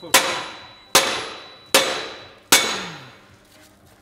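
Four hammer blows on a car's metal exhaust pipe, each a sharp clang that rings and fades, evenly spaced about a second apart: knocking at a joint rusted fast over 30 years.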